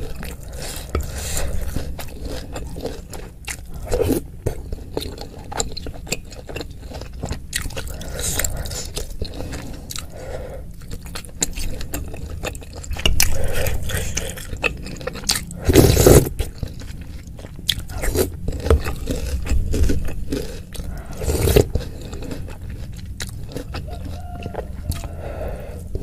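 Close-miked eating of bakso aci in spicy broth: wet chewing and smacking, mixed with a wooden spoon scraping and dipping in a white enamel bowl. The run of small clicks and mouth noises is unbroken, with a few louder moments, the loudest about two-thirds of the way in.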